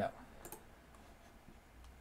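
A computer mouse button clicking once, about half a second in, faint against a low steady hiss.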